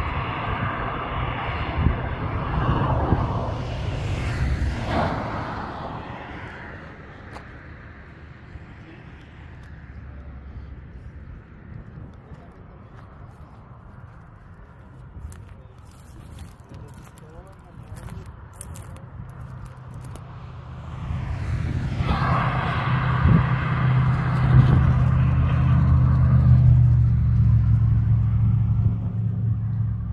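Highway traffic passing. One vehicle goes by in the first few seconds and fades away. After a quieter stretch, a heavier vehicle approaches with a low, steady engine drone and is loudest near the end.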